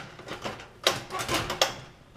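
Clicks and light metallic clatter from handling an opened sheet-metal fluorescent high bay fixture: a sharp knock about a second in, then a few more rattling clicks.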